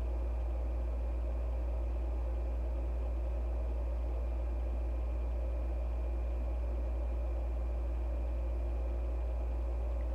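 Steady low hum with a faint hiss of background noise; no other sound stands out.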